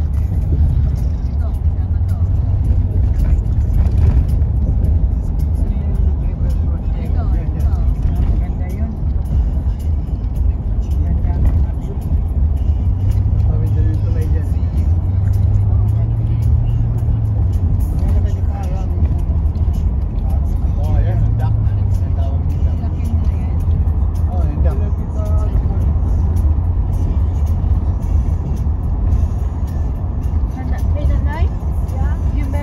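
Steady low road and engine rumble heard from inside a moving car, with faint voices or music in the background.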